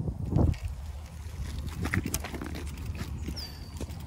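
Road bike's 32c tyres rolling over a cracked, weedy old concrete sidewalk: a steady low rumble with scattered clicks and knocks, the loudest about half a second in. A short high falling whistle sounds near the end.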